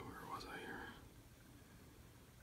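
A man's faint whisper in the first second, then near silence: room tone.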